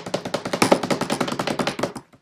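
A drumroll beaten with the hands on a wooden desktop: a rapid, even run of taps, more than ten a second, building to the reveal and stopping abruptly.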